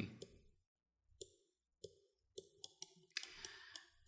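Faint computer mouse clicks, a handful spaced irregularly, as sliders are clicked and dragged, with a short soft rustle near the end.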